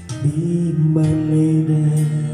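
A man singing long held notes into a handheld microphone over a music backing track, the pitch shifting about a second in.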